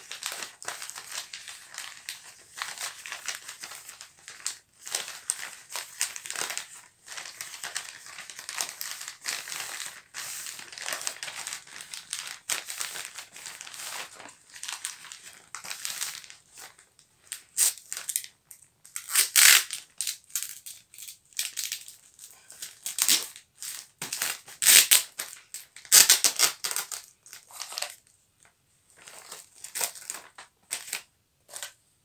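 Brown kraft wrapping paper crinkling and rustling as it is folded and creased around a parcel by hand. The rustling is softer at first, then comes in louder, sharper crackles through the second half.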